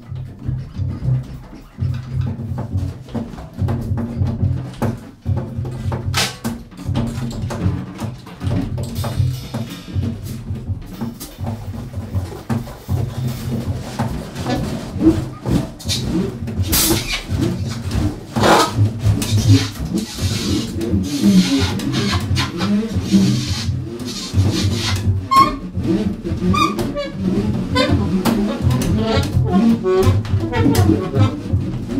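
Free-improvised jazz trio: double bass playing repeated low notes under scattered drum and cymbal strikes, with the loudest crashes about 6, 17 and 18 seconds in. Near the end, short high alto saxophone notes come in.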